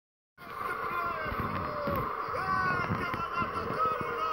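Football TV broadcast sound played through computer speakers: a commentator's excited, raised voice over stadium crowd noise during a goal celebration. It starts abruptly a moment in.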